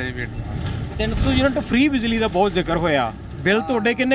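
Conversational speech inside a bus, over the low, steady rumble of the bus's engine, strongest in the first second or so.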